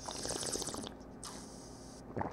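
A mouthful of red wine being slurped and swished during tasting, a faint wet hiss, followed by a short hissy breath out.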